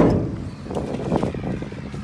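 A sharp bang right at the start, ringing off briefly, then irregular scuffing footsteps on wet, slushy pavement with small clicks of handling.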